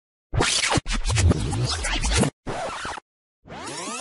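DJ record-scratch sound effect, chopped into three hard-cut chunks with abrupt gaps of silence between them. Near the end it gives way to a sweeping electronic effect whose pitch glides up and down.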